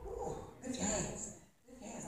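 A faint, indistinct speaking voice.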